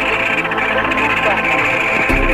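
Indistinct voices mixed with other sound, with no clear words.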